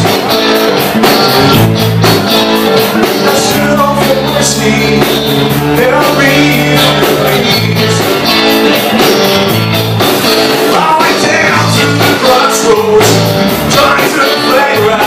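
A live blues-rock band playing at full volume: electric guitars and bass guitar over drums keeping a steady beat.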